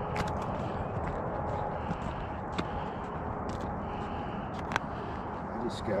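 Boots crunching on snow-covered ice, a few sharp crunches at irregular spacing over a steady outdoor noise.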